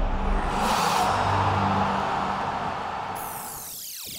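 Animated intro sting: a swelling whoosh over a low rumble, then near the end a cluster of tones falling in pitch.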